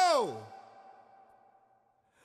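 The end of a man's long, drawn-out cry of dismay, 'No!', which drops in pitch and trails off about half a second in. After it only a faint, thin, steady tone remains.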